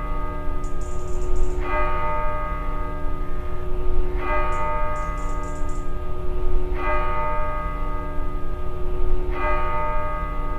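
A single bell tolling slowly, struck four times at even intervals of about two and a half seconds, each stroke ringing on until the next.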